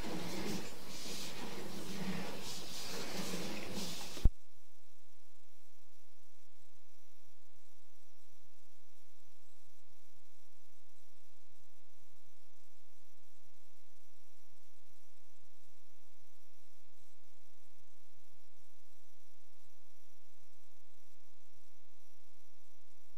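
Indistinct background noise, cut off by a click about four seconds in, after which only a steady electrical hum and static remain. This is the line noise of the sewer inspection camera's recording system.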